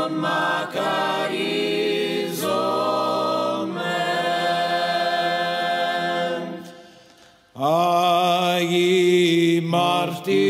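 Byzantine liturgical chant sung by voices in long, held notes. The singing fades out about seven seconds in and starts again abruptly, louder, half a second later.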